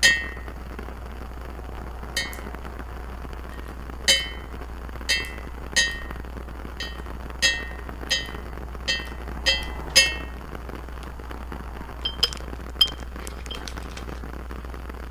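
Glass whisky bottle tapped about a dozen times, each tap a bright clink with a short ringing tone that dies away quickly. Near the end come a few lighter, higher-pitched clinks.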